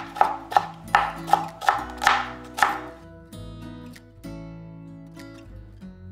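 Chef's knife chopping celery on a plastic cutting board, about seven quick chops at roughly three a second, stopping about three seconds in. Soft background music with guitar plays throughout.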